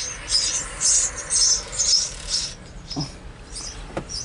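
High-pitched squeaking from a passing loaded autorack freight train, in short bursts about twice a second. The squeaks fade about two and a half seconds in, leaving a few fainter ones.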